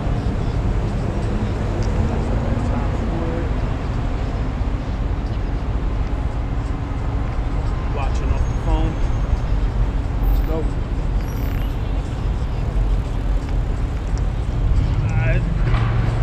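Busy city street noise: a steady low traffic rumble from passing cars, with snatches of voices about halfway through and again near the end.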